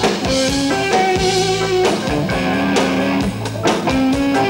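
Rock band playing an instrumental passage with no singing: a melodic guitar line of held notes over bass and a steady drum beat.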